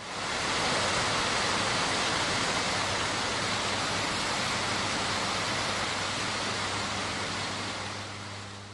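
Steady rush of water from fountain jets splashing into their basins, fading in during the first second.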